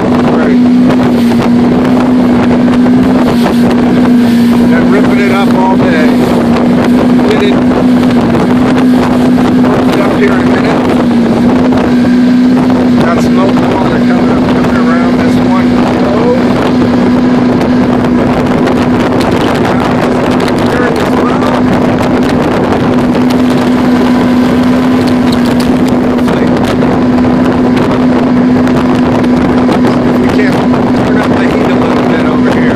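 Motorboat engine running steadily under way, a constant unchanging drone over the rush of water past the hull.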